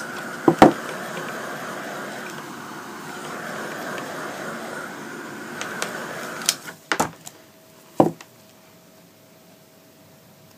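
Craft heat gun blowing steadily, then switched off about two-thirds of the way through. A couple of sharp knocks follow as the canvas is handled on the table.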